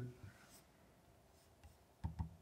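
Near silence: quiet room tone with a few faint, short clicks.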